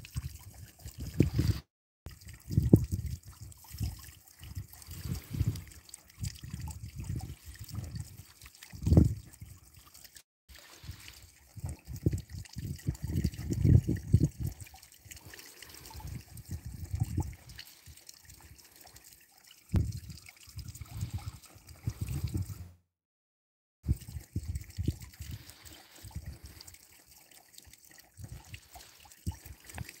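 Water trickling in a koi pond, under irregular low rumbling surges that come and go every second or two.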